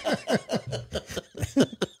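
People laughing in a string of short bursts.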